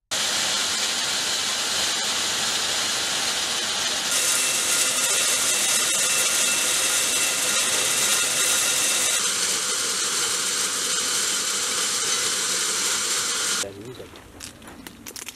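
Almond hulling machine running while freshly harvested almonds are shovelled into its metal hopper: a loud, steady, dense rushing clatter of nuts and hulls. Its character shifts about four seconds in and again around nine seconds, and it cuts off sharply near the end.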